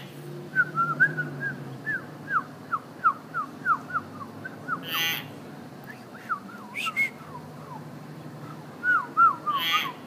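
Common hill myna whistling runs of short, quick notes that swoop up and down, broken by a harsh squawk about halfway through and another near the end.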